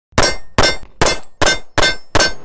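Five sharp metallic clangs in quick succession, about 0.4 s apart, each ringing briefly: pistol rounds from a 1911 striking steel targets.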